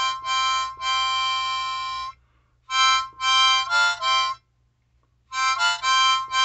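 Harmonica played in three short phrases with brief pauses between them, the first ending on a long held note.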